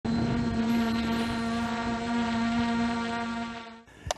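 DJI Mavic Air 2 quadcopter hovering close by, its propellers and motors giving a steady, even-pitched buzzing hum that fades and cuts off near the end.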